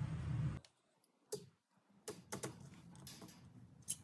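A steady low hum cuts off about half a second in, followed by a handful of scattered light clicks and taps from a steel tape measure being handled.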